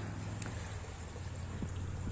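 A small stream running, heard as a steady, even rush of flowing water.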